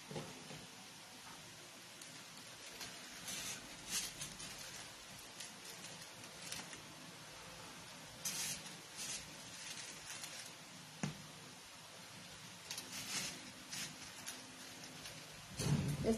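Soft, intermittent rustling and scratching of a foam-flower arrangement being handled as stems are set into its pot of artificial grass, with one brief knock near the middle.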